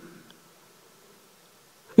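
Faint room tone: a low, even hiss in a pause between a man's spoken sentences, his voice trailing off at the start and coming back in at the very end.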